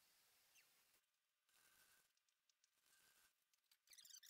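Near silence, with almost no sound at all, as if the audio drops out between pieces of speech.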